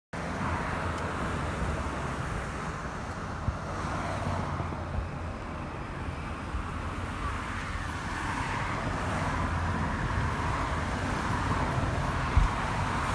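Steady road noise of a moving vehicle on a highway: tyre and wind noise with passing traffic, and two light knocks in the first half.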